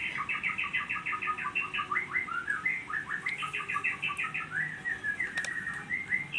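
A small bird singing a fast, continuous run of high chirps, about seven a second, with a few sliding warbled notes partway through.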